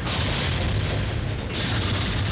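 Loud crash sound effects of a bus accident: a continuous heavy rumble with crashing noise, the sound changing abruptly about one and a half seconds in.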